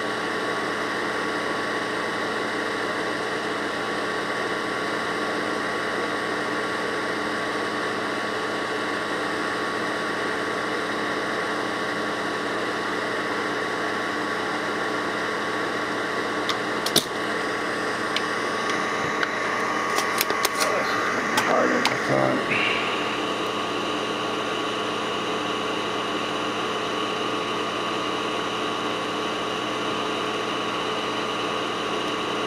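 Desoldering FETs from an ebike controller board: a steady electric hum with a fixed tone runs throughout. A sharp snap comes about 17 seconds in, then a cluster of clicks and rattling a few seconds later, after which the hum steps up in pitch.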